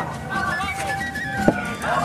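Background music playing quietly, with a single sharp click about one and a half seconds in.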